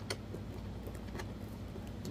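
A few light clicks from hands handling a cardboard box, the clearest near the start and about a second later, over a steady low hum.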